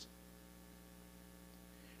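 Near silence with a faint, steady electrical hum.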